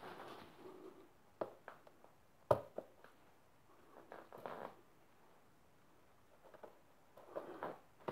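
Mostly quiet, with a few faint clicks and knocks, the loudest about two and a half seconds in, and some light rustling as hands work at the fuel tap under the tank of a Fantic trial motorcycle.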